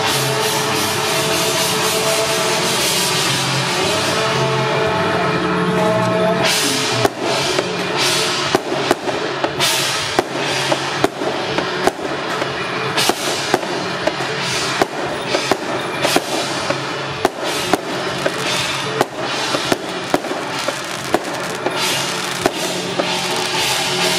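Music with a beat plays. From about seven seconds in, sharp firecracker bangs go off over it at irregular intervals, dozens of them.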